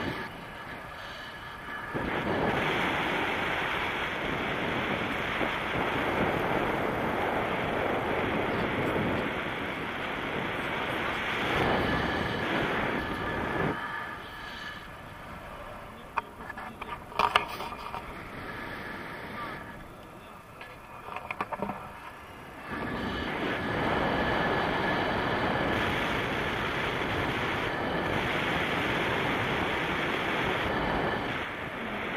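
Wind rushing over the camera microphone in tandem paraglider flight, loud and steady. It eases off for several seconds in the middle, where a few sharp clicks come through.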